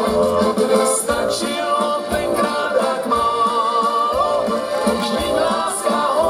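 Two accordions and an electronic keyboard playing a slow romantic song live. A wavering accordion melody sits over a steady bass beat.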